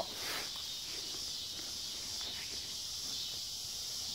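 Steady high-pitched chorus of insects buzzing in the background, with a few faint small ticks.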